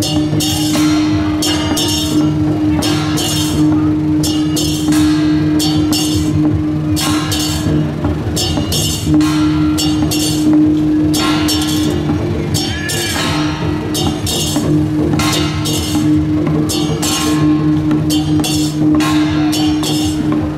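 Taiwanese temple procession percussion: drumming with repeated crashes about once a second, over a steady low droning tone.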